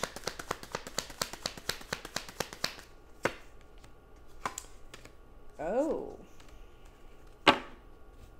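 Tarot deck being shuffled by hand: a quick run of card flicks for about three seconds, then a few single taps as cards are laid on the table, the sharpest near the end as the deck is set down. A short rising vocal sound about six seconds in.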